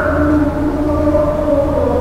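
Devotional chanting: a voice holding long, drawn-out notes that step slowly up and down in pitch.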